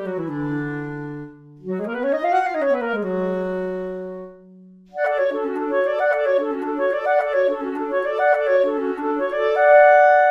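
Two sampled clarinets from the 8Dio Clarinet Virtuoso software instrument playing fast legato lines in two-part harmony, the lower part with the 'Clarinet 2' character setting. Two quick rising-and-falling arpeggio figures settle on held notes, then from about five seconds in a faster figure of repeated notes ends on a held pair of notes.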